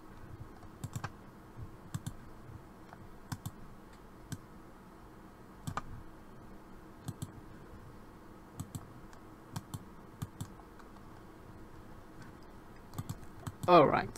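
Computer mouse clicks, scattered about once a second and some in quick pairs, over a faint steady hum, while vector shapes are edited on screen.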